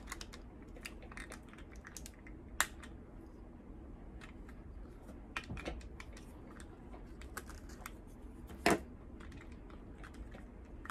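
Faint plastic clicking and scraping from a knife tip worked against the twist-off battery cover of a Joseph Joseph TriScale folding digital kitchen scale, trying to turn it open. Three sharper clicks stand out, a few seconds apart.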